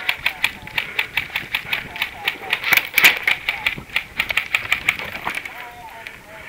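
Airsoft gunfire: a run of sharp clicks, several a second, thinning out near the end.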